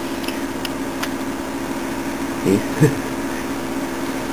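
Steady machine hum made of several low tones, with a few faint clicks in the first second.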